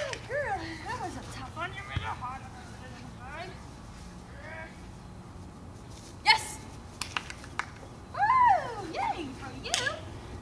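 A person's high, sing-song voice calling and praising a dog in drawn-out, wordless tones, with a few sharp clicks, the loudest about six seconds in.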